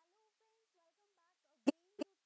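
Mostly near silence, with a very faint humming voice that wavers in pitch, then a sharp click about a second and a half in and a smaller one at the very end.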